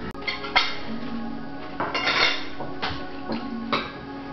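Cutlery and dishes clinking now and then at a dinner table, with quiet background music playing steadily.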